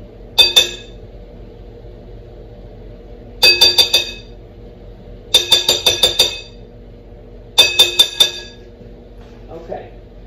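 A kitchen utensil clinking against a glass mixing bowl in four quick bursts of taps, each tap ringing briefly in the glass.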